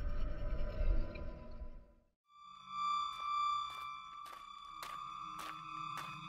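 Trailer sound design: a low rumble that cuts out about two seconds in. After a brief silence comes a steady, high electronic tone with regular ticks about twice a second.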